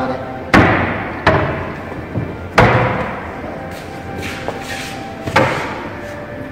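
Four sharp knocks and bangs of wooden cabinet doors and panels being handled, each with a short echo: three in the first three seconds and one more about five seconds in.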